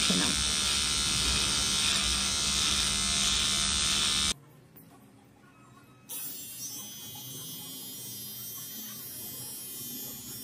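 Small battery-powered AGARO women's trimmer buzzing steadily as it trims underarm hair. It cuts off suddenly about four seconds in. About two seconds later a fainter, steady buzz starts again as the trimmer is run over the leg.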